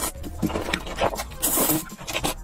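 Close-miked slurping and wet chewing of black bean noodles (jjajangmyeon): a run of short mouth sounds, with a longer hissy slurp about one and a half seconds in.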